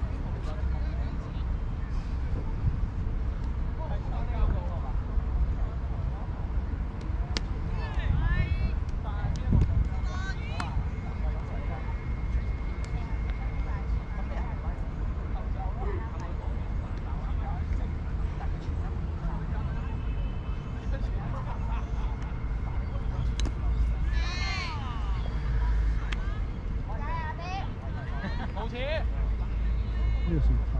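Indistinct distant voices calling out across an open field over a steady low rumble of outdoor background noise, with a few faint knocks.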